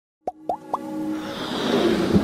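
Animated logo intro sound effects: three quick pops rising in pitch, about a quarter second apart, followed by a swelling whoosh that grows louder as electronic intro music begins.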